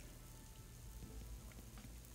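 Near silence with a faint steady low hum.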